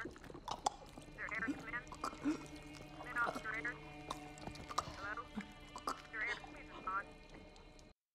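Quiet film soundtrack: a low steady drone under several short raspy vocal sounds, mostly in pairs.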